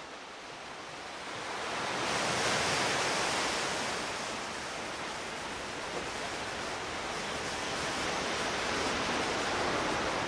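A steady rushing noise with no tone or rhythm, swelling a little about two seconds in.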